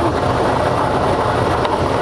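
Air-mix lottery ball machine running: a steady rushing noise with a low hum as its blower lifts the numbered balls up four clear tubes. It comes on right at the start.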